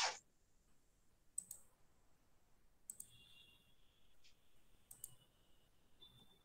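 Near silence: a brief burst of noise right at the start, then three faint clicks about a second and a half apart, the last two each followed by a faint short high tone.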